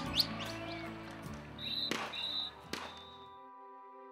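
Football match sound: a noisy crowd-and-pitch mix with a few sharp knocks, and a short high whistle in two blasts about two seconds in. From about three and a half seconds only soft sustained background music chords remain.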